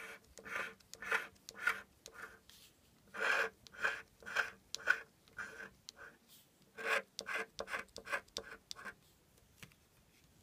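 Scratch-off lottery ticket having its silver coating scraped off in short repeated strokes, about two a second, with brief pauses about two seconds in and again about six seconds in.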